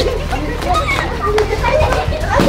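A group of young people shouting and laughing over one another, excited voices overlapping with no clear words, with a couple of short sharp clicks in the middle.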